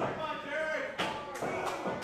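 Wrestling spectators shouting and calling out, with a sharp impact about a second in and two lighter knocks just after it.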